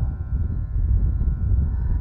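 Uneven low rumble of wind on an outdoor microphone in a pause between spoken phrases.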